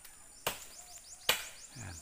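A blade chopping into a star apple tree branch: two sharp strikes a little under a second apart, the second the louder, part of a steady run of cuts.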